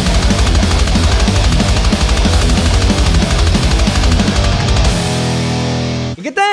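Heavy metal riffing on a distorted electric guitar through a Danelectro Fab Metal pedal and a cabinet simulator, over a backing track of fast drums and bass. About five seconds in, the drums and bass stop and the last chord rings out.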